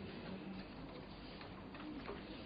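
Quiet room tone: a faint, even background hiss of a hall picked up through the lectern microphone, with no distinct events.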